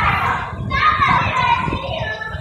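Children's voices talking and calling out over one another, loud and close.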